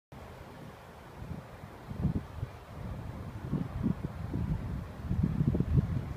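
Wind buffeting the microphone in irregular low gusts, growing stronger after about a second.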